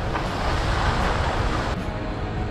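Rushing noise of a downhill ski run: wind over the camera microphone with skis sliding on packed snow, easing slightly near the end.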